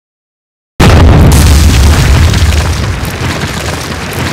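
A trailer-style boom hit: after a moment of dead silence, one sudden, very loud, deep impact about a second in, rumbling away slowly over the next few seconds.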